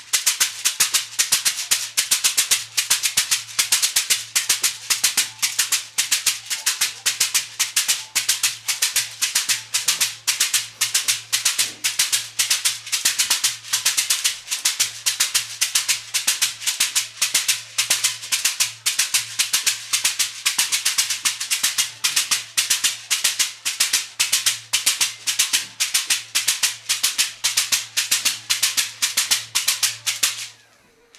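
A shekere (gourd shaker wrapped in a net of beads) being shaken in a steady, even rhythm of about four shakes a second, with a faint steady low hum underneath.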